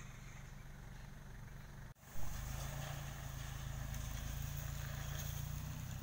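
Vehicle engine running steadily at low revs, a low drone, starting suddenly about two seconds in after a fainter low hum. It is the ute's engine as it takes up a tow strap on an engineless vehicle.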